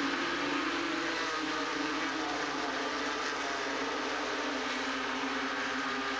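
A full field of NASCAR Busch Grand National stock cars running at full throttle just after the green flag, their V8 engines blending into one steady, dense drone.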